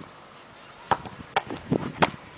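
Four sharp knocks about half a second apart, starting about a second in, over faint outdoor background noise.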